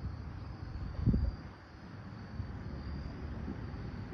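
Outdoor ambience: a steady high, thin insect trill over a low wind rumble, with a brief low bump about a second in.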